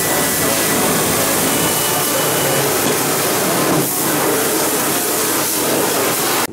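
Self-service car-wash high-pressure spray gun jetting water into a car's rear wheel well, a loud steady hiss as it blasts out leaves and grime.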